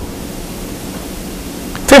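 Steady hiss of background noise with no other sound in it, and a man's voice starting again right at the end.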